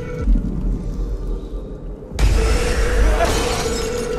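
Trailer sound design over a held musical drone: a deep boom just after the start, then a sudden loud crash about two seconds in that rings on.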